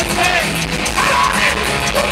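Thrash metal band playing live at full volume: distorted electric guitars, bass and drums with the singer's yelled vocals over them, heard from out in the audience.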